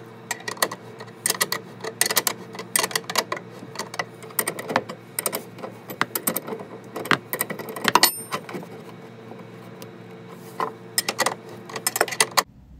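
A hand wrench clicking and clinking against a nut and washer as the nut is tightened onto a half-inch threaded rod, in irregular short clusters over a steady low hum. There is a brief high squeak about eight seconds in.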